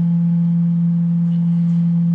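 A loud, steady low-pitched electronic hum from the sound system, holding one unchanging pitch with a fainter higher overtone.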